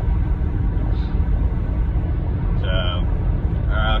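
Steady low road and engine rumble inside a moving car. A voice makes two short sounds, about two and a half seconds in and again near the end.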